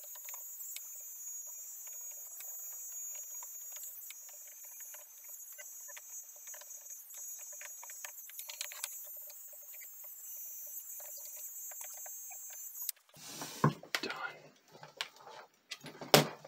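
A handheld tape head demagnetizer buzzing steadily while it is worked over the tape echo's heads to demagnetize them, fast-forwarded so the buzz comes out high and hiss-like, with light clicks as it is moved. It cuts off about 13 seconds in, followed by a few louder knocks.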